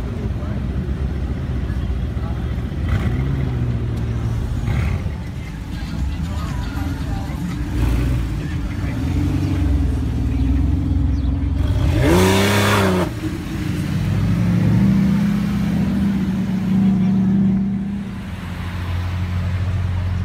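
Performance cars driving off at low speed one after another, their engines and exhausts running with small rises and falls in pitch, and one short, loud rev about twelve seconds in that climbs and drops again.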